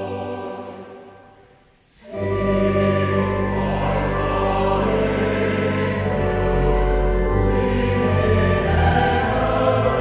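Mixed choir singing: a held chord dies away into a brief near-silent pause, then the choir comes in again about two seconds in with sustained chords.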